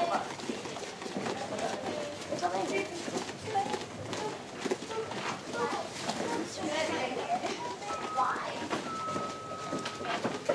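Indistinct chatter of children and adults, with no clear words, in a busy gym room.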